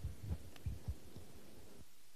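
Faint, muffled low thumps and knocks from people moving about, which cut off abruptly near the end.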